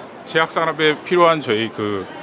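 A man speaking, in short stretches of talk with brief gaps.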